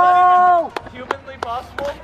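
A person's loud, steady held yell lasting about a second, followed by several sharp taps.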